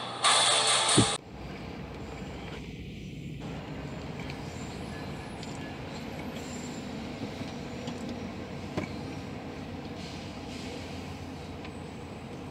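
Guitar music cuts off about a second in. A diesel-hauled Amtrak passenger train, led by GE Genesis locomotives, then rolls slowly past, a steady rumble with a few faint clicks.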